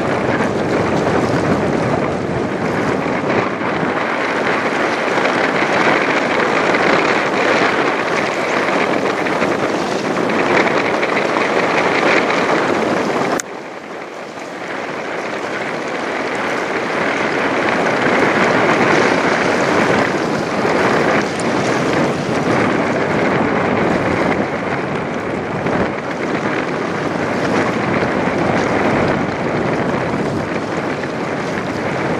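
Wind rushing steadily over the microphone. It drops off suddenly about halfway through and builds back up over the next few seconds.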